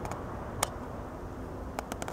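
Low steady room noise with a sharp click just over half a second in and a couple of lighter clicks near the end, from a handheld camera being handled.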